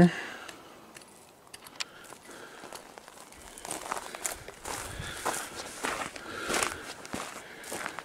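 Footsteps on loose, gravelly dirt: quiet at first, then an irregular run of short scuffing steps through the second half.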